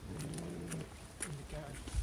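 A faint voice in the background: a low hum held for about half a second, then a few soft speech sounds and light clicks.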